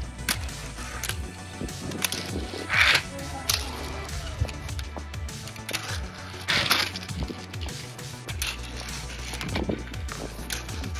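Background music, over a hand-skate's small wheels rolling and its deck scraping on concrete and a steel coping rail. There are two louder scrapes, about three seconds in and again near seven seconds.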